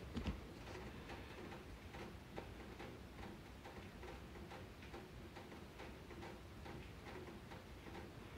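Faint, quick, even ticking over quiet room noise.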